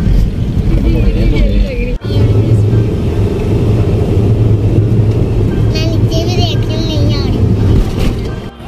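Steady low rumble of engine and road noise inside a moving car's cabin, broken off briefly about two seconds in, with voices or singing over it.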